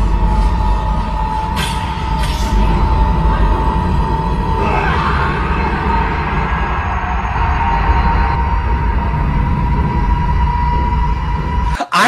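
Dark, tense film score: a held high note over a deep rumble, with two short sharp sounds about two seconds in.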